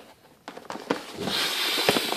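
A few light clicks and knocks of a cardboard shipping box being handled, then, from a little past a second in, a steady rustle of paper and cardboard sliding as the box flaps are opened.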